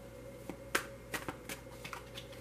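Several light, sharp clicks and taps at irregular intervals, over faint room tone.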